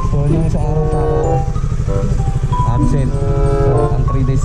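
A single-cylinder motorcycle engine running at low speed, heard under a voice and background music.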